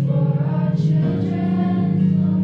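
Youth girls' choir singing a song, over held low accompaniment notes.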